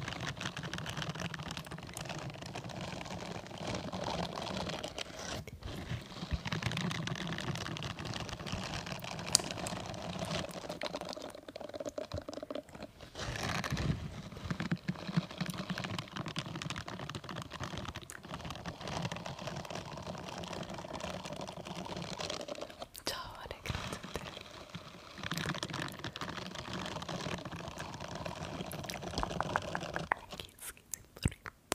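Silicone bristle scrubbing glove rubbed and brushed against a microphone: a dense, crackly scratching made of many fine ticks, with a few short pauses.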